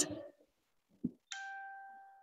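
A single bell-like chime, struck once about a second and a quarter in and dying away over about a second, marking the start of the next numbered item in a course-book listening recording. A soft knock comes just before it.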